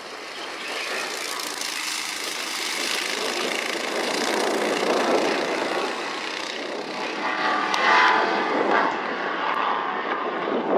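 Several go-kart engines running as three karts race around the track: a steady wash of engine noise, with one engine note standing out more clearly for a couple of seconds near the end.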